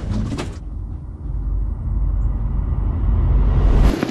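Deep rumble inside the pontoon boat's cabin as it moves through ice, muffled at first and swelling louder and brighter over about three seconds before it cuts off suddenly.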